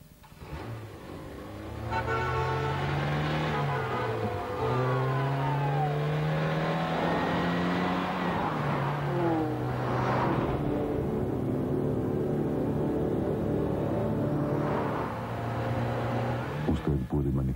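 Car engine accelerating through the gears. Its pitch climbs, drops back at each upshift about four and nine seconds in, then holds steady, with a whooshing swell about ten seconds in and again near the end.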